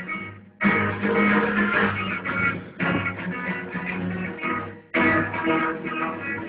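Acoustic guitars strumming chords together in a small band. The strumming breaks off briefly about half a second in and again just before the five-second mark. It is recorded on a mobile phone and sounds dull, with no high treble.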